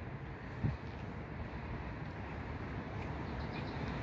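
Steady low outdoor background rumble with one brief soft thump less than a second in.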